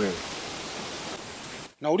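Steady hiss of background noise with no pitch or rhythm, cutting off abruptly near the end just before a voice resumes.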